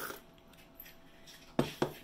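Ceramic tea mug set down on a wooden table: two quick knocks close together near the end.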